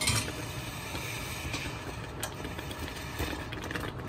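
Thick sweet pongal of rice and lentils simmering in a pan, giving a few faint pops over a steady low kitchen hum.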